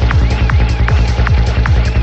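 Dark psytrance track at 155 BPM: a steady, evenly repeating kick drum over a continuous deep bass, with short synth glides that arch up and down above it.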